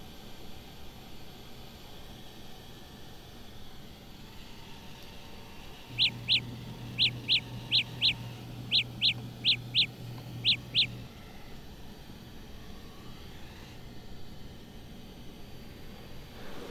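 Samsung Galaxy Buds earbuds sounding their locator tone after being asked where they are: about a dozen short, high chirps, mostly in pairs, over a low hum. The chirps start about six seconds in and stop about five seconds later.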